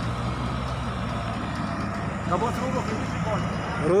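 Engine of an off-road 4x4 vehicle running steadily at low revs, an even low rumble.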